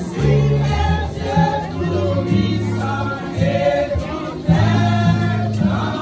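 Women's church choir singing a gospel hymn together, over a loud low bass line that moves from note to note beneath the voices.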